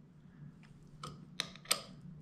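Three small sharp metallic clicks about a second in, the last one loudest, as a steel drill guide is offered up to a 3.5 mm SOP bone plate and seated in one of its screw holes.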